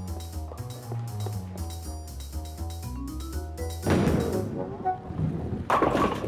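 Light cartoon background music with a bass line. About four seconds in it gives way to a rumbling rush as a bowling ball reaches the pins, and near the end a single pin clatters down.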